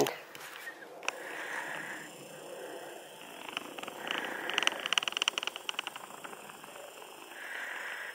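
A camera's zoom lens motor buzzing in quick pulses for about two seconds midway, with soft breaths before and after.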